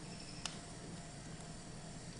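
Quiet room tone with one light click about half a second in, from a metal spatula spreading soft cream cheese in a baked pie crust.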